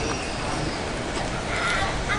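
Outdoor promenade ambience: a steady rough noise with a strong low rumble, and faint distant voices or short chirps, a clearer pair of them near the end.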